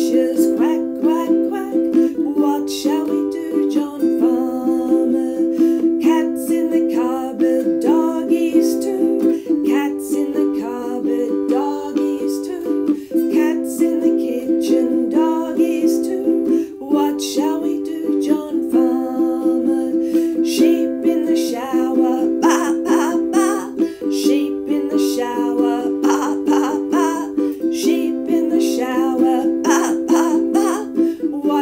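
Strummed acoustic string instrument playing a song accompaniment in a steady rhythm, its chords changing every few seconds.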